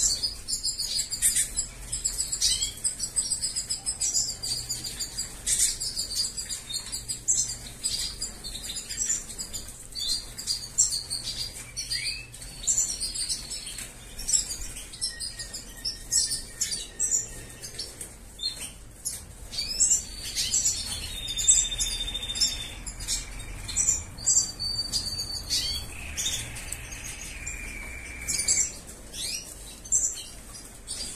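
Caged goldfinches of the large race (jilguero mayor) twittering with many quick, high chirps, with a few longer held whistled notes in the second half, and wing flutters and small clicks as they hop about the cage.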